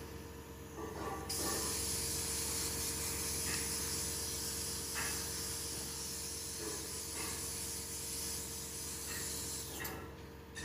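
A steady hiss that starts abruptly about a second in and cuts off at the end, with a few faint ticks.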